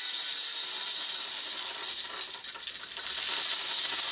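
Portable 2200-watt gas stove burner hissing steadily, just lit and burning.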